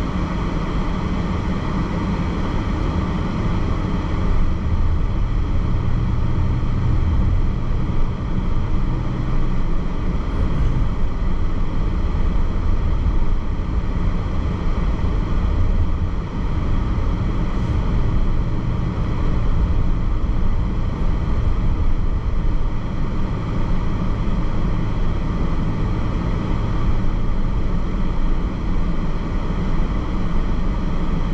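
Steady low road rumble heard from inside the cabin of a moving car.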